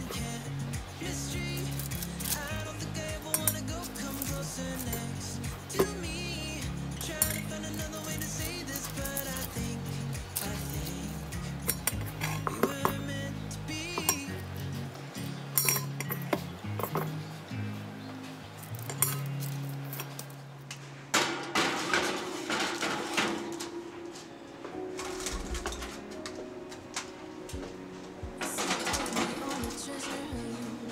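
Background music, over repeated clinks and scrapes of a metal spoon against a stainless steel mixing bowl as biscuit dough is scooped out and dropped onto a sheet pan.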